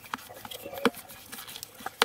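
Hands kneading a wet, oily bread dough, giving soft, irregular sticky clicks and squelches. The dough is still shaggy and not yet fully mixed.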